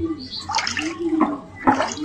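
Running water, with a brief bit of speech near the end.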